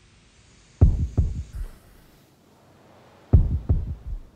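Deep, dull thuds in two runs of three, the thuds about 0.4 s apart and the second run starting about two and a half seconds after the first.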